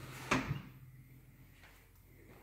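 An interior panel door being handled: two sharp knocks in quick succession, like the latch clicking and the door bumping.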